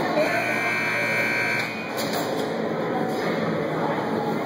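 Ice rink buzzer sounding one steady tone for about a second and a half just after the start, over the chatter and bustle of the arena.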